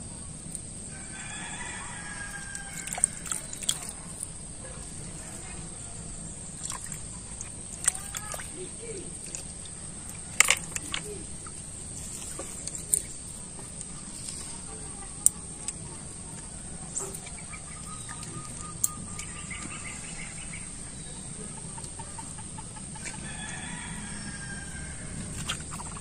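Three long bird calls, each about two seconds, over a steady background with a constant high whine and scattered sharp clicks.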